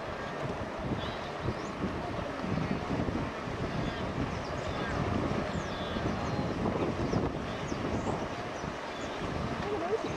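Steady churning and splashing of water as a herd of wildebeest and zebras crosses a river and scrambles out up the muddy bank, with wind buffeting the microphone.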